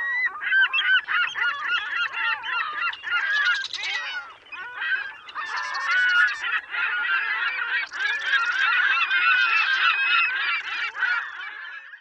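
A flock of birds calling all at once: many short, overlapping calls in a dense chorus, thinning briefly about four seconds in.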